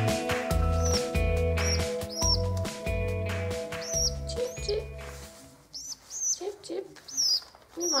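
Background music with a heavy bass beat that stops about five seconds in, over a pigeon squab's high, squeaky begging peeps, one or two a second, as it is hand-fed from a syringe.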